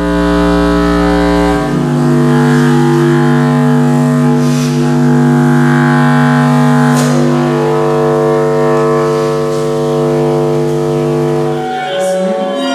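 Contrabass clarinet holding long low notes: a very deep note for about the first second and a half, then a higher sustained tone rich in overtones.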